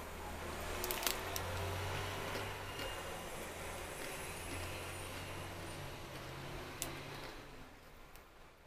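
Crunchy brown-sugar fried dough twist being bitten and chewed close up: a dense, crackly crunching with a couple of sharp cracks, tapering off near the end.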